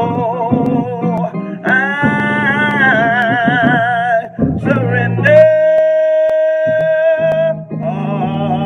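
A man singing a slow gospel song, holding long notes with vibrato, over a steady instrumental accompaniment; about five seconds in he holds one long, steady note.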